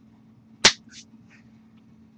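A single sharp smack about two-thirds of a second in, from a hand striking during signing, followed by faint short breathy hisses.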